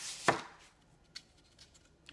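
A knife cutting through a green floral foam brick, ending in one sharp chop about a quarter of a second in as the chunk comes off. A faint click follows about a second later.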